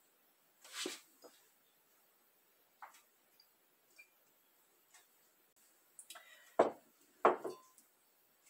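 Glassware handled on a kitchen counter while an herbal liquid is poured into small brown glass bottles: a few faint clicks and one short rush of sound about a second in, then two sharp knocks about half a second apart near the end as the glass measuring cup and bottles are set down.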